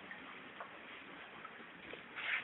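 Faint background noise with a few faint ticks scattered through it.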